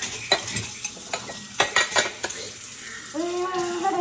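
Metal utensils clinking and rattling against a ceramic mug as it is rinsed under a running kitchen tap, over the hiss of the water. A couple of sharp clinks come early, and a quick cluster of them comes around the middle.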